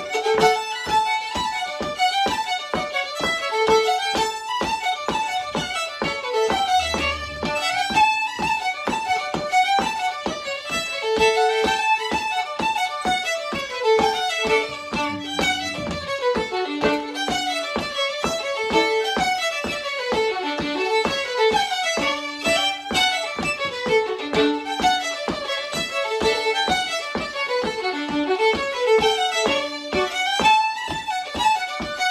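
Two fiddles playing a fast fiddle tune together, a steady stream of quick running notes.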